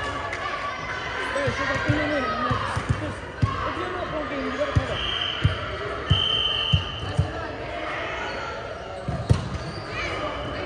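Volleyball thudding off hands and the hardwood sports-hall floor, a series of sharp echoing thumps amid players' voices. Two short high-pitched tones come about five and six seconds in.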